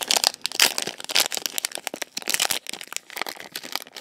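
Foil wrapper of a Pokémon Base Set booster pack crinkling and crackling as hands handle it and work it open, a quick run of small crackles throughout.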